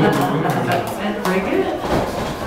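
Several sharp smacks of wrestling strikes landing on an opponent's body against the ring ropes, with voices mixed in.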